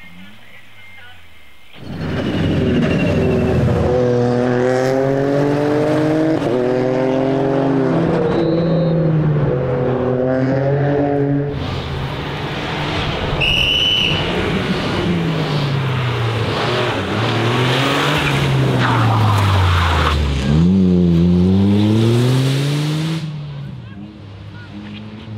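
Rally car engine at full throttle, its pitch climbing in repeated steps as it shifts up through the gears, then falling and rising again as it brakes and accelerates away. The car is a Toyota GR Yaris with a turbocharged three-cylinder engine.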